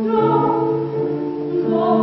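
Female classical voice singing a slow Baroque song with piano accompaniment, moving between held notes over low piano bass notes.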